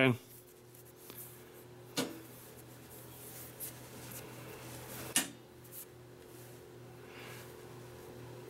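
Two sharp clicks, about two and five seconds in, with a few fainter ticks, as a small hardened steel tappet is handled and turned over in the hands. A steady low hum sits under the quiet room tone.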